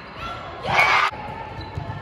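Sounds of an indoor volleyball rally in a gym: the ball struck during play, with a short loud burst of noise lasting under half a second about three-quarters of a second in.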